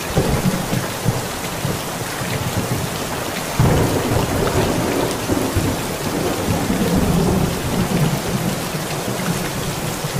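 Steady rain with thunder: low rumbling sets in at once, and a louder thunderclap about three and a half seconds in rolls on for several seconds.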